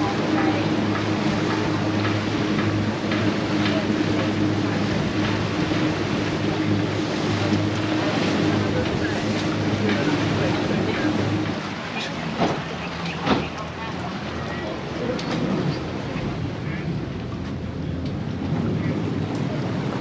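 A passenger boat's engine running steadily under way, with water rushing past the hull and wind on the microphone. A little past halfway the engine hum drops away, leaving the water and wind noise, with two sharp knocks just after.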